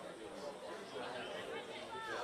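Indistinct voices chattering and calling out across a football pitch, none close enough to be made out as words.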